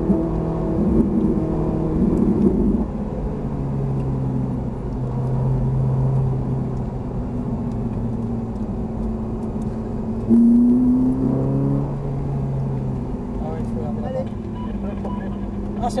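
Ferrari 458 Italia's 4.5-litre V8 heard from inside the cabin on track: loud and high-revving for the first three seconds, then dropping to a lower steady note. About ten seconds in it jumps louder and rises in pitch under acceleration for about two seconds before easing off again.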